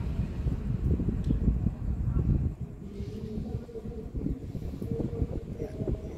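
Wind buffeting the microphone outdoors as a low, gusty rumble, strongest in the first couple of seconds and easing about halfway through.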